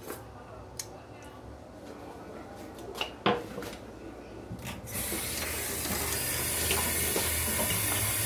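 A few light knocks of kitchen utensils at a stainless steel sink, then the kitchen faucet turned on about five seconds in, with water running steadily into the steel sink.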